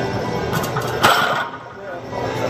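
A sharp metallic clink about a second in, as the iron plates on a loaded barbell shift during a bench press, over steady background noise.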